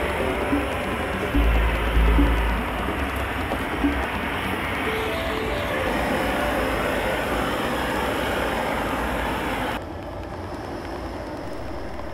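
Steady roar of gas torches and glass furnaces in a glassblowing hot shop, with background music underneath. The roar drops somewhat about ten seconds in.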